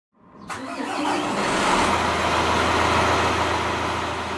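An engine starting, about half a second in, then settling into a steady idle by about two seconds.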